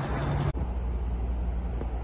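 Steady low rumble of a car driving, heard from inside the cabin. It follows about half a second of outdoor roadside noise that cuts off abruptly.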